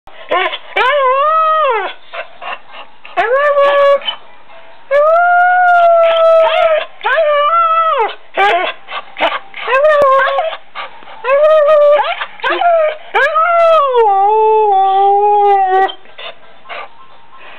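A bulldog-type dog howling in a series of about seven drawn-out, sing-song calls, each bending up and then down in pitch. The last call is the longest and sinks lower near the end.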